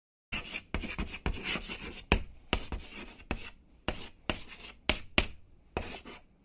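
Chalk writing on a chalkboard: scratchy strokes broken by sharp taps, about two a second.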